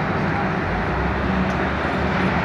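Street traffic noise: a steady roar of engines and road noise from buses and cars, with a low engine hum in the second half.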